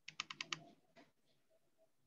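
Faint computer keyboard keys tapped five times in quick succession, then one fainter tap about a second in.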